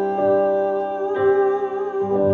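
A woman singing into a handheld microphone over an instrumental backing, holding notes with a wavering vibrato; the accompanying chord changes about a second in.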